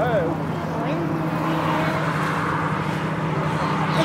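Steady motor-traffic noise from a dual carriageway with a low, even engine hum, and people's voices at times over it.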